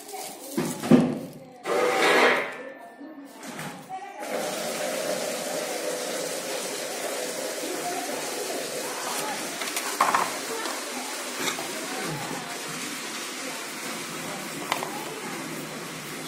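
Indistinct background voices, with a few loud handling sounds in the first four seconds.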